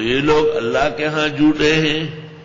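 A man reciting Quranic Arabic in a slow melodic chant (tajwid recitation), one phrase of long held notes that slide up and down.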